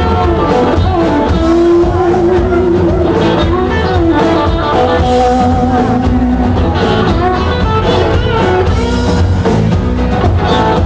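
Live band playing an instrumental break: strummed acoustic guitar and an electric guitar playing long held, wavering lead notes over bass and drums.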